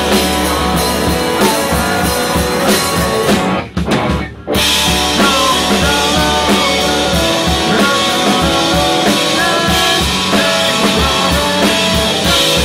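Rock band playing live: drum kit, electric guitars and bass with a male lead vocal. The band stops dead for about a second a little under four seconds in, then comes straight back in together.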